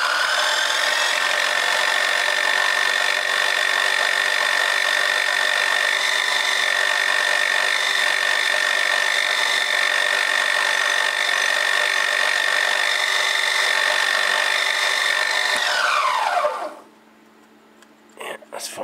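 Milling machine spindle and end mill skimming metal off a part held in the vise: a steady high-pitched whine over a rough cutting noise. It comes up to speed in the first second and winds down in a falling whine about 16 seconds in.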